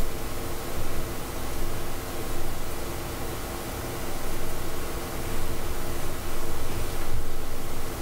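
Steady background hiss with a faint, steady low hum of several tones under it: microphone and room noise.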